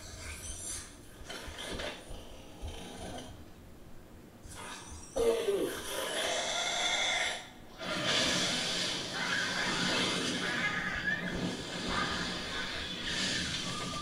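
Television soundtrack of a dragon: snorting and breathing, a sudden growl with a falling pitch about five seconds in, then a long rush of dragon fire from about eight seconds in.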